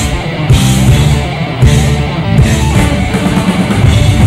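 Heavy metal band playing live: distorted electric guitar, bass and drum kit, with repeated cymbal crashes over a dense, loud instrumental passage.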